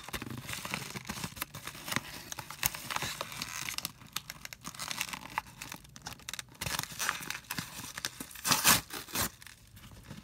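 A mailing package being torn open and handled: paper and plastic packaging tearing and crinkling in irregular rasps, with the loudest tearing near the end.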